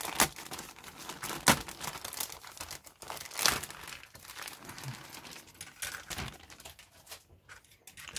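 A clear plastic bag crinkling and crackling in irregular bursts as hands pull it open and work a plastic parts sprue out of it. The sharpest crackles come about one and a half seconds in and again about three and a half seconds in, and the rustling thins out near the end.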